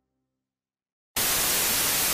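Silence, then a little over a second in, a loud, steady TV-static hiss starts abruptly.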